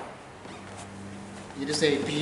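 Quiet room tone with a faint steady low hum, opened by a single soft knock as the wicker flower basket is set down on the altar table. A man's voice starts speaking about one and a half seconds in.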